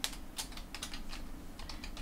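Keys being typed on a computer keyboard: a quick, uneven run of about ten keystrokes typing out a short phrase.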